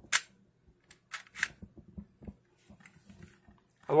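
Plastic clicks and clacks from working the bit-loading chamber mechanism of a WESCO chamber-load cordless screwdriver: one sharp click at the start, two more about a second in, then a few lighter ticks.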